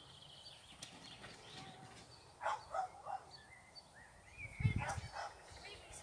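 Small dog barking: a few short barks about two and a half seconds in, then a louder group near the five-second mark.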